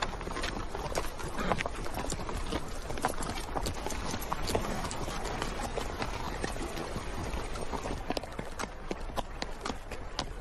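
Horses' hooves clip-clopping in a quick, irregular run of knocks.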